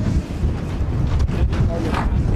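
Gusty wind buffeting an outdoor microphone, a loud, uneven low rumble that swells and dips.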